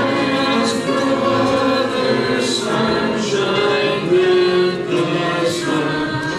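Church congregation singing a hymn together, many voices holding long notes that change pitch every second or so.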